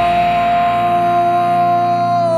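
The last seconds of a pop-punk band recording: one long held note rings out over the band. The deep low end drops out a little past halfway.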